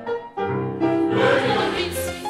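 A choir singing, with a short break about a third of a second in before the next phrase begins.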